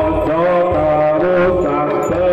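Traditional East Javanese bantengan music: a voice chanting long held, wavering notes over a low drum pulse.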